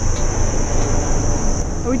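Steady low engine rumble, with a steady high-pitched insect buzz over it.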